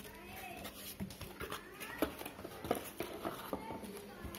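Hands handling plastic-bagged cables in a cardboard accessory box: a few light knocks and rustles, the sharpest about one, two and nearly three seconds in. Faint gliding vocal sounds sit underneath.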